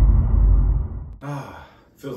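Low rumbling tail of an intro whoosh sound effect, fading out within the first second. About a second later comes a brief sound from a man's voice.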